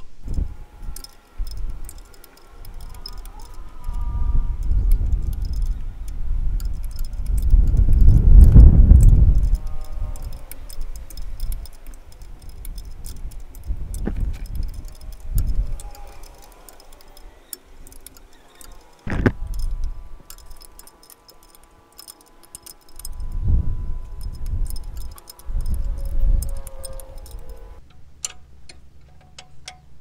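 A spanner clinks and scrapes on a brake-line fitting as a tight flare nut is worked loose by hand. Hands bump and rub close to the microphone, with one sharp click about two-thirds of the way through.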